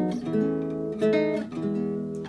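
Nylon-string classical guitar fingerpicked: a few E major chord shapes plucked in turn, each left to ring into the next.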